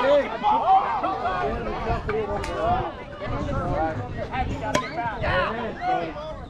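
Many overlapping voices talking and calling out at once, no words clear, with two short sharp clicks, one about two and a half seconds in and one near five seconds.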